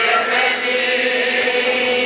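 Male Dalmatian-style klapa ensemble singing a cappella in close multi-part harmony, holding a sustained chord.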